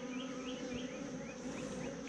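Honeybees of a hived swarm buzzing around their open nuc box, a steady low hum.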